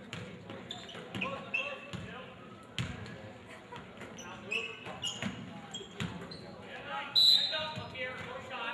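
A basketball dribbled on a hardwood gym floor, with sharp bouncing knocks, short sneaker squeaks and spectators' voices echoing in the large hall. A sudden loud high-pitched sound, the loudest thing here, comes about seven seconds in.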